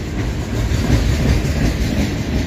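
Freight cars of a long manifest train rolling past at speed, a steady loud rumble of steel wheels on the rails, strongest in the low end.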